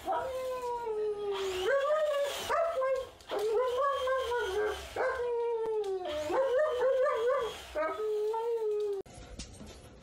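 German Shepherd dog howling and whining in a string of long, wavering calls that rise and fall in pitch, about seven in all. The calls stop suddenly about nine seconds in.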